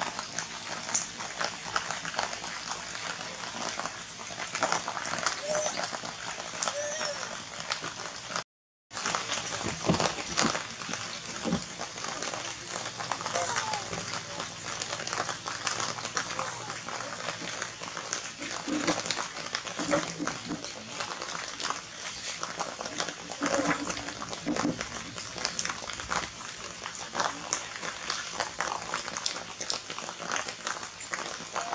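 People's voices talking in the background over a continuous outdoor hubbub, with scattered small clicks and rustles and a brief dropout in the sound partway through.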